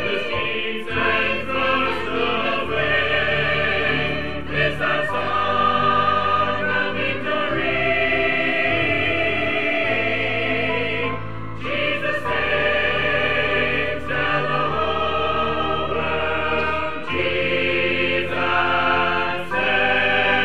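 Mixed choir of men and women singing in parts, with a short break between phrases about halfway through.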